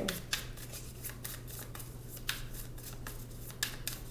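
Tarot deck being shuffled by hand: a quick, irregular run of light card clicks and flicks, over a low steady hum.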